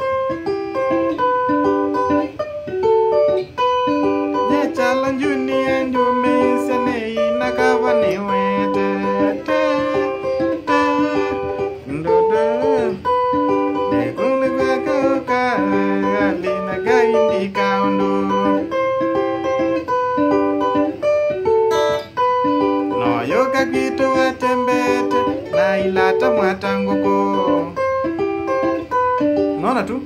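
Electric guitar playing a fast, picked Kamba benga rhythm pattern of quick repeated single notes, with a few sliding notes partway through.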